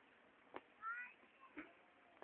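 A cat gives one short, faint meow that rises slightly in pitch, between a few light clicks.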